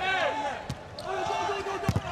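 Volleyball rally on an indoor court: shoes squeak on the court floor, the ball is struck once about two-thirds of a second in, then hit hard near the end as a spike meets the block at the net.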